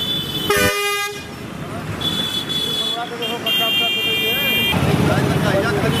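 Road vehicle horns honking in traffic: a short, lower horn blast about half a second in, then shorter high-pitched horn tones at about two seconds and again for about a second from three and a half seconds, with traffic noise underneath.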